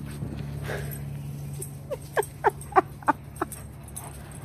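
Alaskan Malamute giving a quick run of about six short yips, each falling in pitch, starting about two seconds in.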